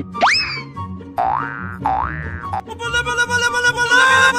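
Comedy background music with a repeating beat, overlaid with cartoon 'boing' sound effects: quick rising pitch slides just after the start and twice more about a second apart, then a held chord of steady tones near the end.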